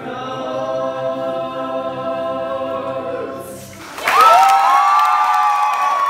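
Young women singing a held chord in harmony with ukulele. About four seconds in the singing stops and a louder burst of cheering takes over: high whoops rise and hold over clapping.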